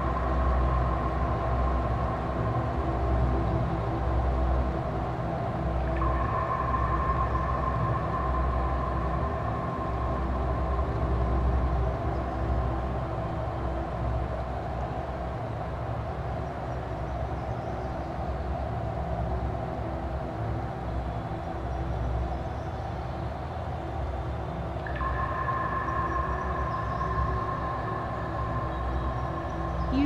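Dark ambient drone music: a steady low rumble under long held high tones that swell in and slowly fade, a new one entering about six seconds in and another near the end.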